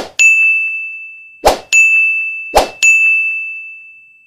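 Animated-button sound effects: three short pops, each followed at once by a bright bell-like ding that rings and fades, about a second and a quarter apart, each ding cut across by the next pop.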